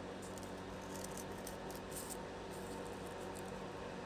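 Faint snips and rustles of scissors cutting through a folded, many-layered coffee filter, over a low steady room hum.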